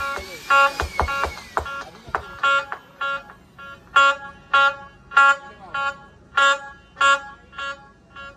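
Amplified bulbul tarang (Indian banjo), the keyed string instrument of a dhumal band, played through the band's sound system: single bright plucked notes picked out one at a time, roughly two a second with short gaps and an occasional bent note.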